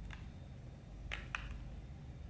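Faint handling sounds of a cordless hair straightener being turned through a lock of hair: two short, sharp clicks a little over a second in, over a low steady room hum.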